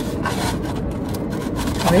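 Steady low rumble inside a car, as from an idling engine or climate fan, with faint rubbing and handling of foam takeout boxes.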